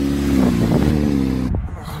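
Honda CBR 600 motorcycle's inline-four engine running steadily, with a slight rise and fall in revs about half a second in; the sound cuts off suddenly near the end.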